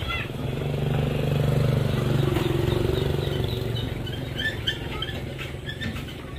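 A motor vehicle's engine passing by on the road, its hum swelling to a peak about two seconds in and then fading away. Short high chirps are heard near the end.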